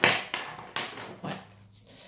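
A deck of oracle cards being shuffled by hand. It makes a few short rustling bursts, the loudest at the start, that fade away within about a second.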